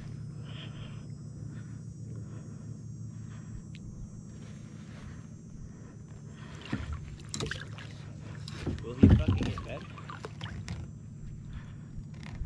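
Water sloshing and splashing against a kayak hull as a striped bass is held in the water and let go, with a run of splashes in the second half, loudest about nine seconds in.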